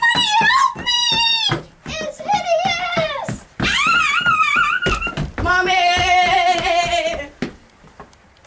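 A high-pitched, wordless voice making four wavering calls, each about a second or two long, with a pulsing, laugh-like beat under them.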